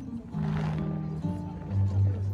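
Marching band music: deep held notes that step in pitch, a crash about half a second in, and a louder low note near the end.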